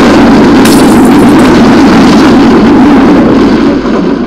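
Very loud, sustained rumble of a large explosion, a dense roar that starts to die away near the end.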